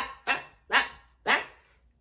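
A man laughing, his laughter trailing off in three short bursts about half a second apart.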